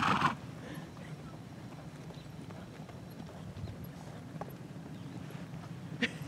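Horse trotting on a sand arena, its hoofbeats faint and muffled by the soft footing, after a short loud burst of sound right at the start.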